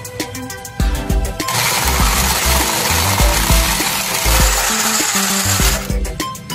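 Personal bottle blender running, starting about a second and a half in and cutting off just before the end, as it blends a shake. Background music with a steady beat plays underneath.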